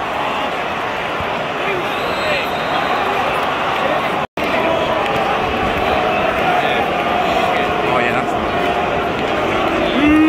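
Football stadium crowd: the steady noise of thousands of fans' voices, with faint pitched strands of singing or shouting running through it. The sound cuts out completely for a moment a little over four seconds in, then the crowd noise resumes.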